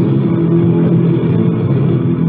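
Thrash/punk band playing live, distorted electric guitar and bass holding a steady low chord. It is a loud, muffled cassette recording with the highs cut off.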